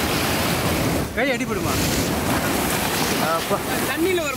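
Shallow surf washing in foam over the sand at the water's edge, a steady rushing wash, with wind buffeting the microphone.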